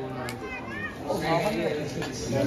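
Indistinct chatter of children's and other people's voices, several voices overlapping, no clear words.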